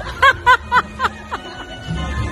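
A person laughing: a run of about six short bursts at about four a second, fading out after a second and a half.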